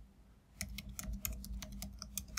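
Computer keyboard typing: a quick run of keystrokes starting about half a second in.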